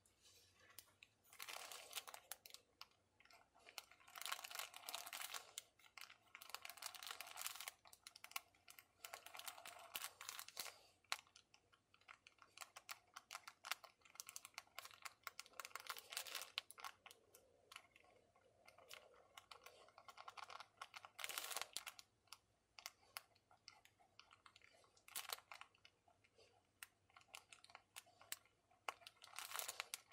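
Faint, irregular scratching of a pen nib on thin paper, in short clusters of strokes with small clicks and taps, as ink lettering and zigzag lines are drawn.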